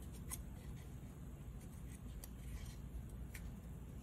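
Faint handling of a folded cardstock tag and its string: a few light, brief clicks and rustles over a low, steady room hum.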